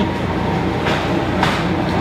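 Large commercial planetary stand mixer running steadily, its beater churning dry ground beef in a steel bowl. Two brief sharp clicks come about a second and a second and a half in.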